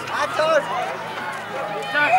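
Several high-pitched voices shouting and calling out over one another: the players and the sideline spectators of a youth rugby match.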